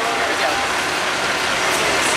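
Steady city street noise, an even rush like passing road traffic, with no clear voices.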